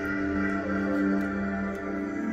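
Slow music with long held notes playing from a CD through a Kenwood SJ7 mini hi-fi's speakers, getting louder as the volume knob is turned up.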